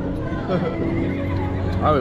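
A man laughing close to the microphone, a wavering, gliding, whinny-like laugh, over a steady low hum.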